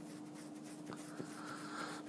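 A pause in a man's talk: room tone with a steady faint hum, and a couple of faint clicks about a second in.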